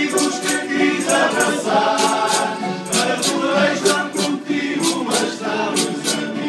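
A men's group singing together in chorus, backed by strummed acoustic guitars, with a tambourine-like jingle marking the beat about twice a second: a song from an Azorean carnival bailinho.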